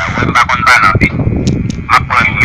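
A harsh, distorted human voice, speech-like but unclear, with dense low rumble beneath it.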